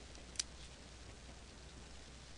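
A single sharp snip of dissecting scissors cutting along the belly of a perch, about half a second in, over a faint steady low hum.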